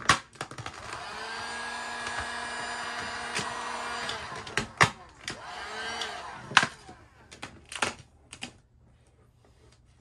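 Handheld electric heat gun running with a steady fan whine, starting about a second in and shutting off around six and a half seconds, as it heats vinyl wrap film. A few sharp crinkles and clicks of the vinyl film being handled follow.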